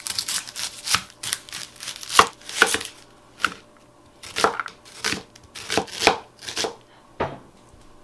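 Chef's knife slicing an onion on a cutting mat: quick knife strokes cutting through the onion and knocking on the mat, coming in irregular runs with short pauses between.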